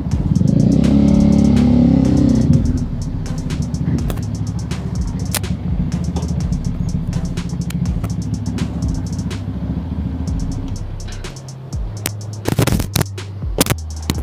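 Bajaj Dominar 400's single-cylinder engine with an aftermarket exhaust idling, a little louder in the first couple of seconds, then stopping about eleven seconds in. A few sharp clicks follow near the end.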